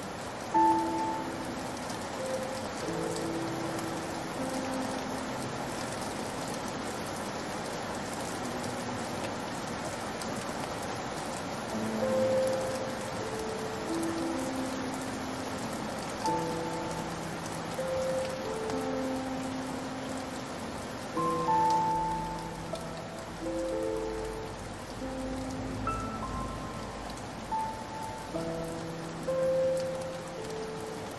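Steady rain falling, with a slow, sad piano melody of single notes and chords playing over it.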